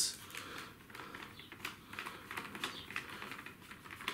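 Faint, irregular small clicks and ticks of a screwdriver turning a screw in the underside of a plastic display-case base, with light handling of the plastic case.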